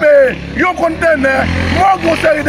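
A man speaking loudly and emphatically in Haitian Creole, with a steady low hum underneath.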